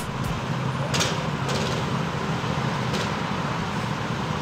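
Go-kart engines running, a steady rumble with a few faint clicks.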